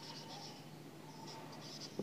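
A marker pen writing on a whiteboard: faint scratching in short strokes.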